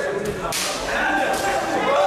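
Sharp slaps of kickboxing strikes landing, gloved punches or kicks on the body, the loudest about half a second in with a fainter one just before it and another past the one-second mark.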